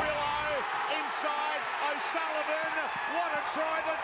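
Sports broadcast commentary: a male commentator calling the rugby league play in steady, quick phrases, with a haze of stadium crowd noise behind.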